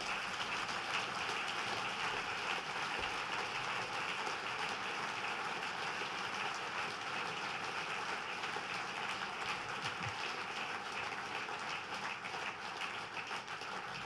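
Sustained applause from a large hall audience, dense clapping that holds steady in level without letting up.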